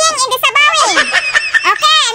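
A very high-pitched voice, chattering in quick bending runs with no clear words.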